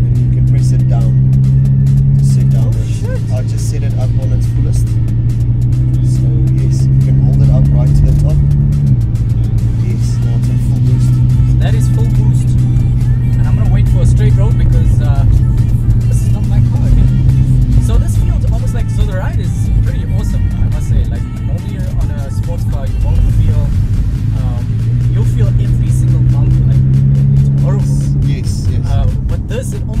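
Background music laid over the steady low cabin drone of a straight-piped Nissan GT-R's twin-turbo V6 cruising, with two men talking. The drone holds level and shifts pitch a few times.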